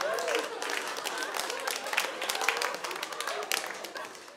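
Audience applauding and laughing after a punchline, the clapping and laughter dying away over a few seconds.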